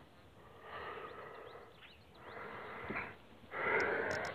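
A person breathing close to the microphone: three soft breaths, about a second and a half apart.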